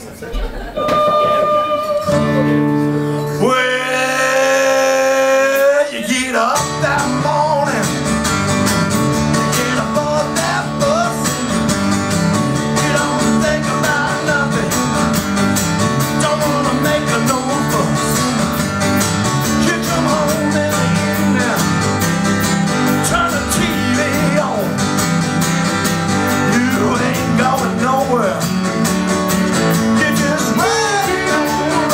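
A live rock band playing in a small room: a few long held notes open it, then about six seconds in the drums, bass and guitars come in together and the band plays on steadily.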